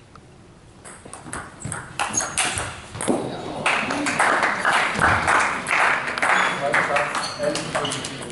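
A table tennis ball clicking off bats and the table in a short rally, followed from about three and a half seconds in by spectators applauding in a sports hall, with some voices.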